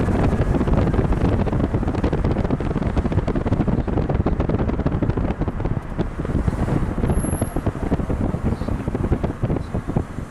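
Wind buffeting the microphone of a moving car, a rough, gusty rush over low road noise.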